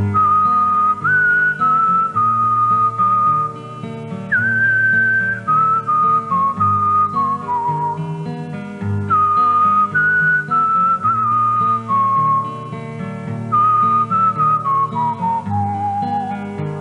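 Instrumental introduction of a Rifian folk song: a single high lead melody in held notes, each phrase stepping down in pitch and starting again, over a lower accompaniment and steady bass notes.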